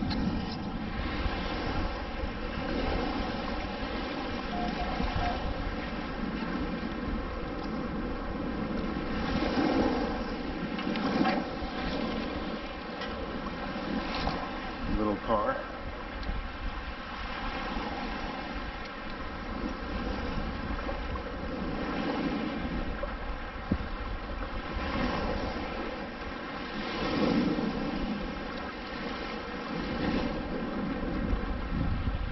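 Wind on the microphone and shallow surf washing around a wader's legs: a steady rushing noise that swells every few seconds. A brief pitched sound comes about halfway through.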